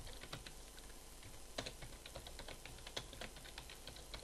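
Typing on a computer keyboard: a run of faint, irregularly spaced keystroke clicks, several a second.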